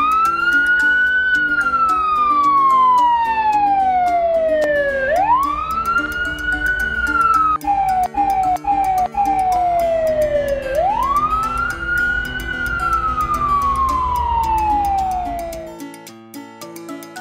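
Fire engine siren wailing in three cycles, each a quick rise followed by a slow fall lasting about five seconds, over light background music.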